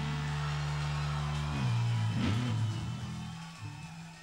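Live rock band music: a held low bass chord that moves to new notes about halfway through, then fades out near the end.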